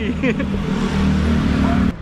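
A motor vehicle passing close by on the street, its engine running with a steady low hum under a rush of road noise. The sound cuts off suddenly near the end.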